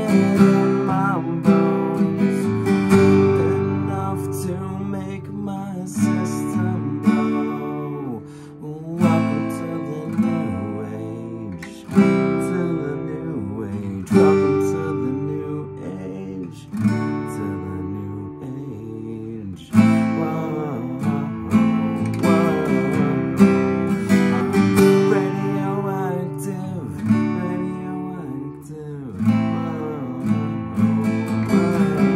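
Acoustic guitar strummed in chords, with hard accented strokes every few seconds, as a man sings along.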